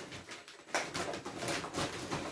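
Shopping bags and packaging being rummaged through by hand: an irregular run of rustles and crinkles, busiest in the second half.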